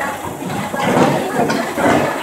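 Voices of several people talking and calling out at once, without clear words.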